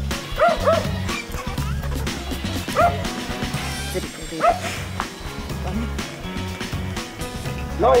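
A dog barking in short yips: two quick ones about half a second in, another near three seconds and one more at about four and a half seconds, over steady background music.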